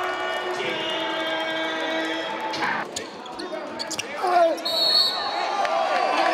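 A basketball bouncing on a hardwood court in a large gym, with several sharp thuds in the middle, over continuous voices from the players and the hall.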